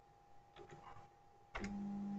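A few faint key clicks, then about one and a half seconds in a click as a stepper motor starts turning in speed mode. It gives a steady low hum of constant pitch.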